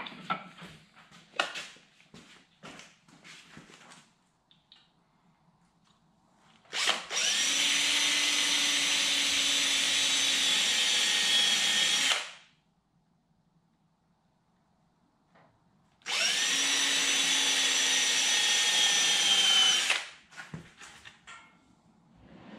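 Cordless drill boring holes into the wooden frame of a toboggan, run in two steady bursts of about five and four seconds, each spinning up quickly to speed. Light clicks and knocks of handling come before the first run.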